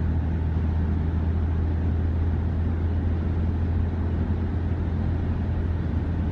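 Steady road and engine noise inside a moving car's cabin: a low, even drone with tyre hiss over it.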